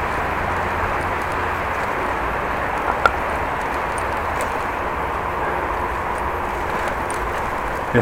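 Steady wind and tyre rolling noise on a bike-mounted camera's microphone while riding a bicycle over wet brick pavers, with one short click about three seconds in.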